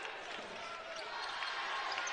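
A basketball being dribbled on a hardwood court over a low, steady arena crowd murmur.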